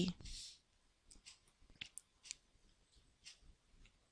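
Faint, scattered clicks from a computer mouse or pen tablet as the presentation pages are navigated, several single clicks a fraction of a second apart in the second half.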